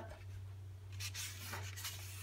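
Paper page of a hardcover picture book being turned by hand: soft rustling swishes of paper, about a second in and again shortly after, over a low steady hum.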